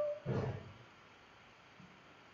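A man's short hum, then a brief breathy exhale through the microphone, followed by low room noise.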